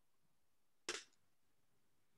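Near silence with a single short, sharp click or knock about a second in.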